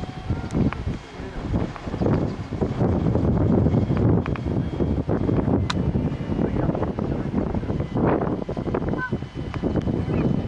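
Gusting wind buffeting the microphone, heaviest from about two seconds in, over the faint sound of a large radio-controlled model helicopter flying overhead.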